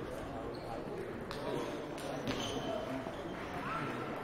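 A table tennis ball clicking as it bounces a few times between rallies, over a background of indistinct voices in the hall.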